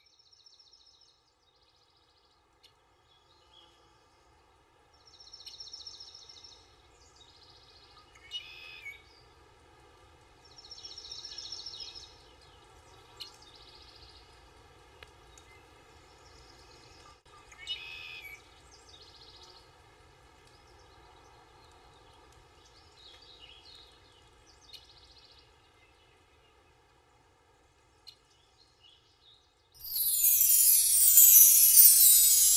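Faint bird calls over quiet outdoor ambience: a handful of short high chirps and trilled calls scattered through, the loudest a little after five seconds and around eleven seconds in.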